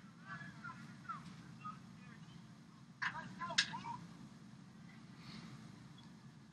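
Faint pool-deck ambience: a low steady hum with distant voices calling and shouting. A short, louder burst of shouts comes about three seconds in.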